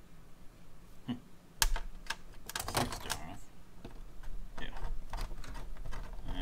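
Irregular light metallic clicks and taps as the small steel end ring and dies of a handheld extruder are handled and picked clean of stuck wax with a small tool.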